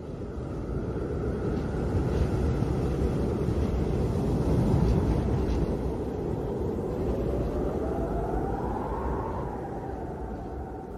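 Storm wind gusting in a blizzard: a low, noisy rumble of wind that swells toward the middle, with a faint rising whistle near the end.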